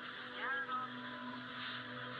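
Faint background ambience: a steady low hum with faint distant voices.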